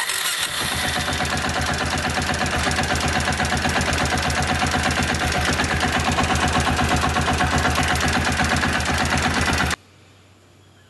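Kawasaki Bayou 400 ATV's single-cylinder four-stroke engine running steadily with the oil filter removed, its oil pump delivering no oil to the filter housing. The engine sound cuts off suddenly near the end.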